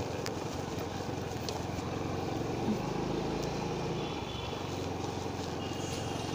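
Steady outdoor hum of nearby road traffic, with a low engine rumble that drops away about four and a half seconds in.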